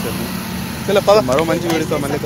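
Motor scooters running at riding speed, a steady low hum, with voices talking over it from about a second in.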